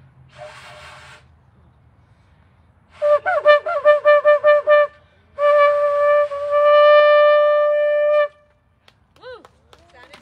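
Ram's-horn shofar being blown: a short breathy blast just after the start, then a run of about eight quick short blasts about three seconds in, then one long, steady, loud blast of about three seconds that stops abruptly.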